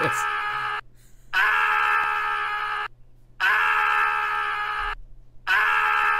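A man screaming one long, steady, high-pitched yell, heard four times over with short silent gaps between. The repeats are identical because a two-second clip is looping.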